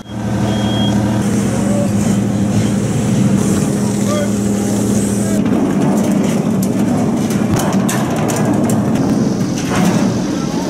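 Heavy diesel machinery running steadily as the cargo ship's crane hoists a forklift, with one short high beep near the start. About halfway the sound changes to busier dockside noise: engines running under scattered knocks and clanks.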